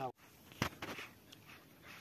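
A single sharp knock about half a second in, followed by a few fainter clicks over quiet outdoor background.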